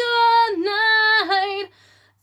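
A woman singing solo a cappella with no accompaniment, holding long sustained notes that step down in pitch, then breaking off near the end for a short pause.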